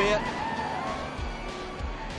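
NASCAR Cup stock car engines running at racing speed in broadcast track audio, a high whine that falls slowly in pitch as the cars pass.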